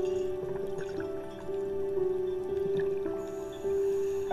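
Slow, soothing background music of long held notes, the melody moving to a new note every second or so.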